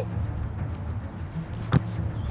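A soccer ball struck by a kick near the end, a single sharp thump, over a steady low outdoor rumble.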